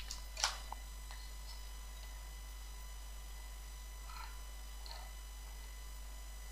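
Quiet room tone with a steady low electrical hum, and a few soft clicks, the clearest about half a second in.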